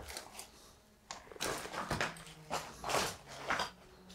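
Footsteps crunching over loose brick and plaster rubble, about two steps a second, starting about a second in.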